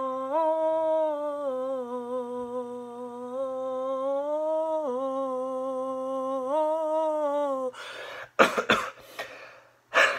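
A man's voice holding one long sung 'oh' note, unaccompanied, for about eight seconds, wavering and dipping in pitch about five seconds in. It breaks off into a run of coughs into his elbow, the loudest near the end.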